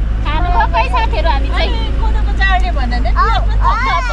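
Several people's voices talking over the steady low rumble of a moving road vehicle's engine and tyres.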